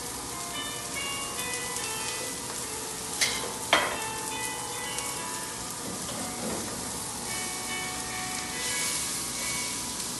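Chopped onion and garlic sizzling in hot sesame oil in a wok, stirred with a spatula, frying so that the onion turns translucent. Two sharp knocks come a little over three seconds in.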